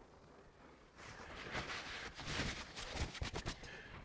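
Faint rubbing of a fingertip drawn along a fresh bead of latex caulk between strips of masking tape, smoothing the seam. It starts about a second in, with a few light ticks near the end.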